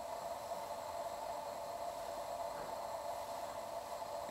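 Steady, even hiss with no distinct events: room tone and recording noise.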